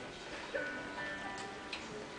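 Music starting up: several held notes with a couple of light ticks about halfway through, the opening of a song performance.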